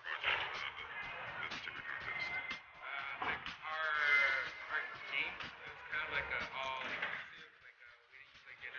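A young man's voice talking quietly over background music.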